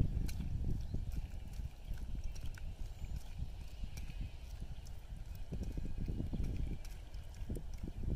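Hands mixing chopped raw sea cucumber with onion and vinegar in a small bowl, with soft wet clicks and squelches, over a low uneven rumble.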